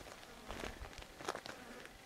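Faint outdoor quiet with a few soft crunches of footsteps on stony, gravelly ground and a faint buzz of insects.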